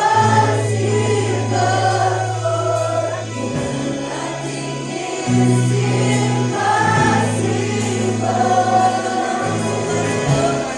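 A congregation singing a worship song together with a live band of keyboard and electric guitar, over long held bass notes that change with the chords.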